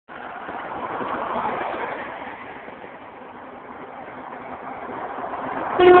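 Road traffic going by: the tyre and engine noise of passing vehicles swells, eases off, then builds again as a Mercedes lorry draws near. A much louder sound starts suddenly right at the end.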